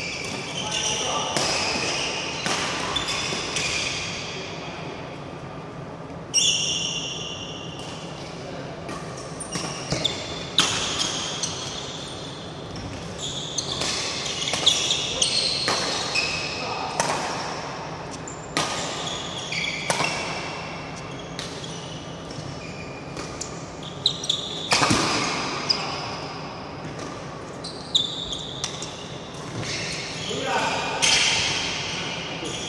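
Badminton rally in a large, echoing sports hall: many sharp racket strikes on the shuttlecock, irregularly spaced, with short high squeaks of shoes on the court mat.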